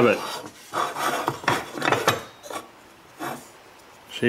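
Hand file scraping across a freshly machined metal model-locomotive chassis in a handful of short, uneven strokes, taking off the rough edges left by the cut.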